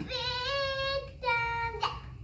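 A baby vocalizing: two drawn-out, high, held notes, the first about a second long, the second shorter and dipping slightly at its end.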